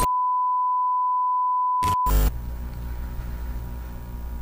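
Steady 1 kHz television test-card tone, held for about two seconds and then broken off by a short loud burst of static. After it, a quieter low hum and hiss carry on.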